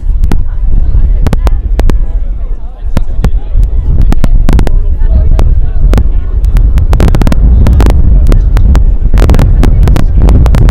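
Wind buffeting the microphone: a loud, deep rumble with frequent crackling clicks of overload, growing stronger and steadier about four seconds in.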